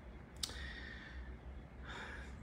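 A man's mouth click about half a second in, then soft breathing during a pause in speech, over a faint low steady hum.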